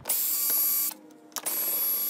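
Drill driver with a socket on an extension, backing out the screws that hold a rocker recliner mechanism to the chair frame. It makes two steady whining runs of just under a second each, about half a second apart.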